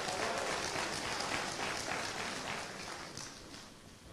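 Congregation applauding, the clapping fading out over the last second.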